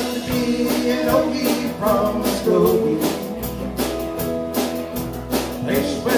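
Live electric band (two electric guitars, bass guitar and drum kit) playing an instrumental country-blues passage: an electric guitar lead with bending notes over a steady drum beat and bass line.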